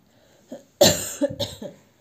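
A person coughing: one loud cough a little under a second in, followed by a few weaker coughs.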